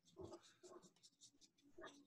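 Near silence with a few faint, short scratches of pen and pencil strokes on paper during drawing.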